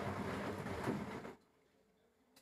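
Electrolux EWF10741 front-load washing machine running, its drum motor and tumbling making a steady mechanical noise that cuts off abruptly about a second in.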